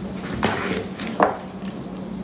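Metal sheet pan set down and shifted on a wooden counter: two knocks, about half a second and a second and a quarter in, over a steady low hum.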